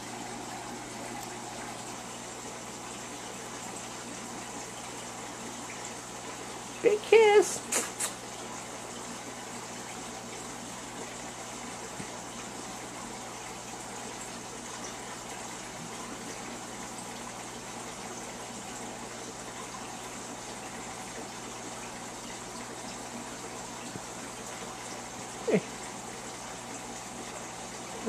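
Aquarium filter running: a steady rush of circulating water with a faint, even hum underneath.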